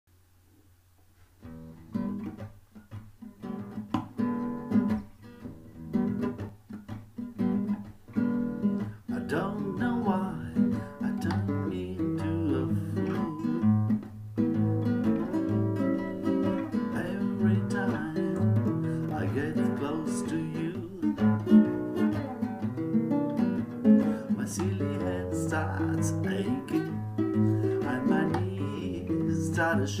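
Nylon-string classical guitar played solo as a song introduction: separate plucked notes starting about a second and a half in, filling out into continuous chordal playing from about ten seconds in.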